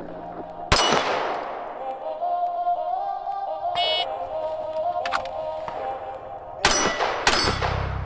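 Pistol shots from a Walther PDP: one about a second in and two close together near the end, with music playing between them.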